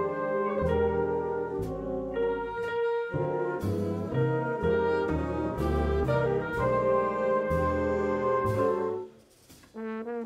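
Jazz big band playing, with trumpets and trombones holding chords over drums and double bass. About nine seconds in the band cuts off sharply, leaving a pause of about a second before a single note enters at the very end.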